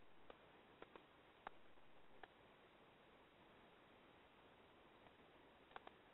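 Near silence broken by a few faint, scattered clicks, like keys being pressed as a phone number is entered.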